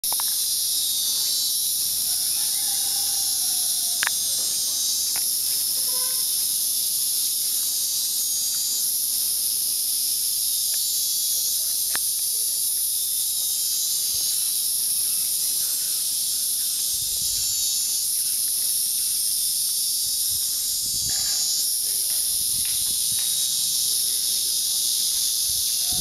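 Chorus of cicadas: a steady, high-pitched buzz that never pauses.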